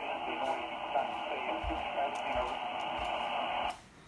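20-meter single-sideband receiver audio from a ham radio transceiver's speaker: a steady, narrow-band hiss of band noise with a faint voice buried in the static. Near the end the hiss cuts off suddenly, as the receiver goes quiet when the microphone is keyed to transmit.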